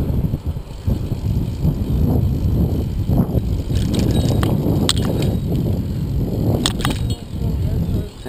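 Wind rushing over the microphone and tyre rumble from a bicycle riding along a paved path, a loud uneven rumble, with a few sharp clicks and rattles in the second half as the bike goes over cracked, sand-strewn pavement.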